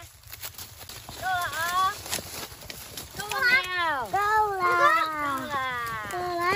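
High-pitched voices calling out, from a child and a woman, including one long drawn-out call in the second half; a few light clicks sound in the first two seconds.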